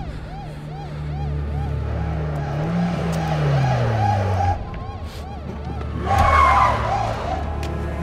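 Car engine rising and then falling in pitch with tyres skidding on pavement, and a second loud tyre skid about six seconds in. Under it runs a film score with a pulsing figure repeating about twice a second.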